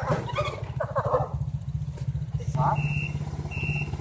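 Quad bike engine running steadily at low revs with a fast pulsing note, under voices. Near the end two short high electronic beeps, about two-thirds of a second apart, sound over it.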